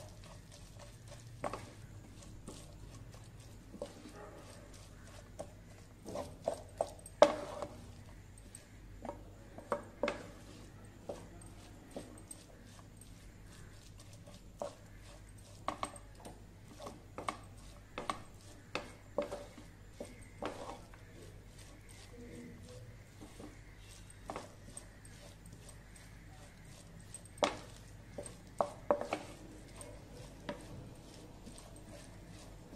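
A wooden spatula stirring chopped onions in a non-stick frying pan, with irregular knocks and scrapes against the pan. The loudest knocks come about seven seconds in and again near the end.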